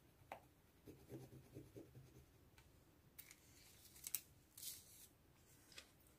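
Faint scratchy rubbing as a rub-on transfer sticker is pressed down onto planner paper with a small tool, a run of short strokes in the first couple of seconds, followed by a few light paper taps and rustles.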